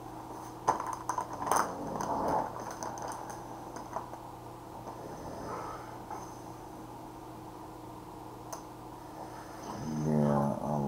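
A few sharp clicks and clinks with some rustling, mostly in the first two and a half seconds, then single small clicks near the middle and near the end, as small objects are handled. A steady low electrical hum underlies it.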